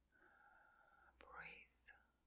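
Faint whispered voice, with a sharp click about a second in followed by a short rising whispered sound.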